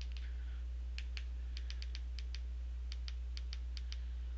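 Faint, sharp clicks of the buttons on a TV box's handheld remote control being pressed, more than a dozen in quick runs starting about a second in, over a steady low electrical hum.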